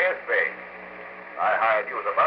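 Speech from an old radio drama recording, broken by a short pause in the middle, with a low steady hum underneath.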